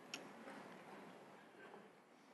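Near silence: sanctuary room tone, with one faint click just after the start.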